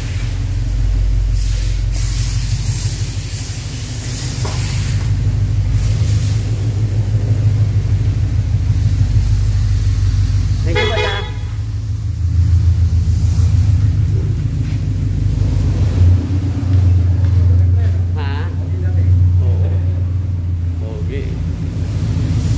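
Toyota 86's 2.0-litre flat-four boxer engine running at low speed as the car drives slowly out. It is a steady low rumble that gets louder as the car passes close, about halfway through and again later.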